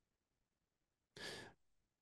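A single short breath, about a second in, heard against near silence.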